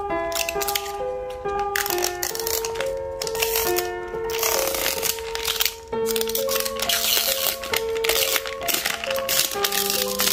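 Background music, a simple melody of single notes, over the crinkling and crackling of clear plastic shrink-wrap being peeled off a plastic candy container, the crinkling growing busier about halfway through.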